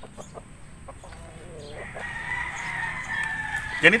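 A rooster crowing: one long, drawn-out call that starts about halfway through and ends just before the end.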